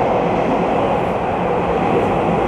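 A Puyuma Express tilting electric train passing through the station at speed on the adjacent track: a loud, steady rushing noise, heard through the open doors of a waiting commuter train.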